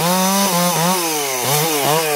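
Chainsaw running at high revs while limbing a felled tree, its engine note sagging briefly several times as the chain bites into limbs and climbing back between cuts.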